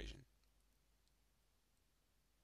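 Near silence: faint room tone after a man's voice trails off at the very start.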